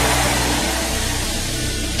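Sustained low background music: held chords with no beat, under a steady hiss.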